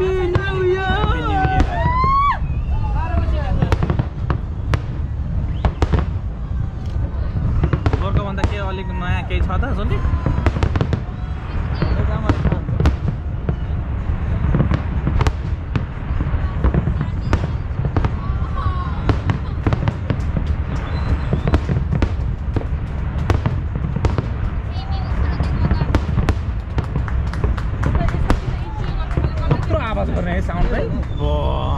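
An aerial fireworks display in full swing: a steady low rumble of shell bursts broken by many sharp bangs and crackles.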